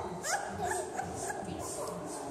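Young children squealing and chattering, short high rising squeals over a busy background of voices.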